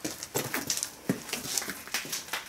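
Footsteps crunching and scuffing over dirt and debris on a wooden-walled passage floor, an irregular run of short crunches about two or three a second, with clothing and debris rustling.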